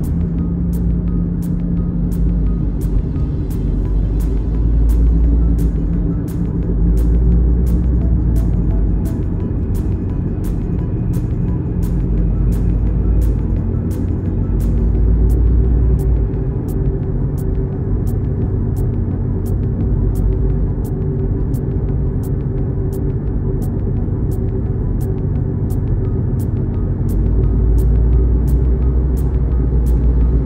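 Steady low rumble of a car driving, heard from inside the cabin, under music with a steady beat.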